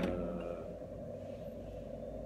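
The fading ring of a steel extruder screw just set down on a table, dying away within the first half second, then quiet room tone with a steady low hum.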